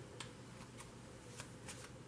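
Faint shuffling of a hand-held deck of tarot cards, with a few light card snaps scattered through it.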